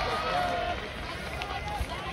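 Voices calling out across a baseball field in drawn-out shouts, the sound tailing off over the two seconds.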